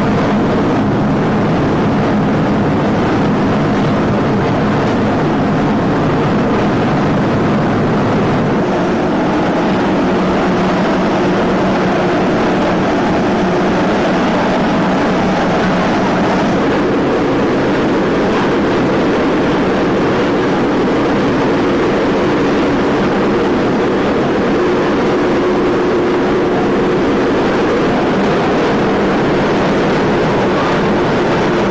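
Propane gas burners firing with a loud, steady rush, carrying a few faint steady hum tones; the deepest part of the sound thins out about eight or nine seconds in.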